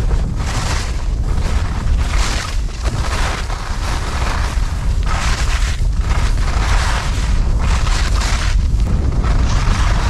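Wind buffeting the camera microphone while skiing downhill, with repeated swishes of skis scraping over hard, icy snow about once a second as the turns go by.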